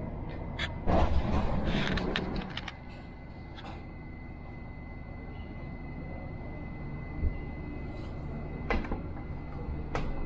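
Dubai Metro train standing at a station: the steady low hum of the car's equipment, with a thin steady high whine that sets in after a few seconds. A louder rattling clatter comes about a second in, and a short sharp click near the end.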